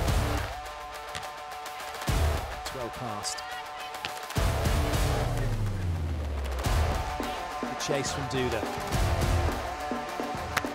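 Music with a steady bass line playing over the match, with a few short sharp hits of the ball during the rally.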